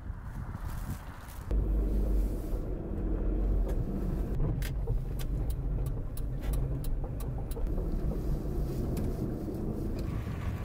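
Steady car engine and road rumble heard from inside the car's cabin, starting suddenly about a second and a half in. A run of light, evenly spaced clicks, about three a second, sits over the middle of it.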